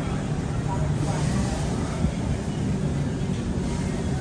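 Indistinct background chatter of voices over a steady low rumble, typical of a busy café or shop.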